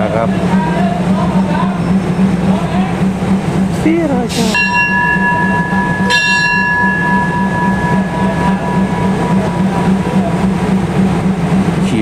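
A station bell struck twice, about a second and a half apart, its bright ringing tone fading over several seconds: the signal for the train to depart. Under it runs the steady low drone of the waiting train's diesel engine.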